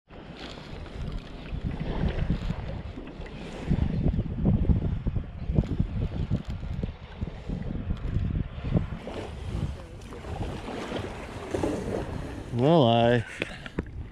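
Wind buffeting a sea kayak's camera microphone, an uneven low rumble, with water lapping against the kayak; a voice is heard briefly near the end.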